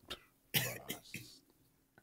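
A man's short, breathy throat sounds: a quick one at the start, then a cluster of three over the next second.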